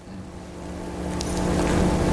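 A sustained keyboard chord of several steady notes, swelling gradually louder.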